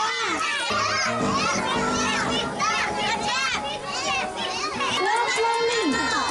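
Many young children's voices at play, high-pitched and overlapping, with adults talking among them. Background music comes in about a second in.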